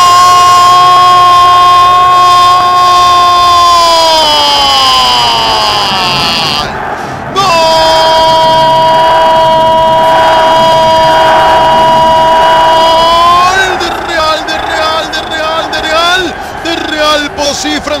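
Football commentator's drawn-out goal cry, "¡Gooool!", held on one high note for about four seconds and then sliding down. After a breath comes a second long held cry of about six seconds, which breaks into rapid excited talk near the end.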